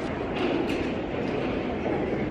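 Steady rumbling background noise of a large hall, with faint indistinct voices mixed in.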